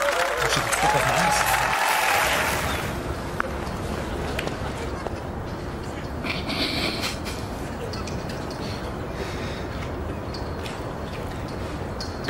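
Steady outdoor street ambience, an even wash of traffic noise, following about two seconds of louder music and laughter at the start.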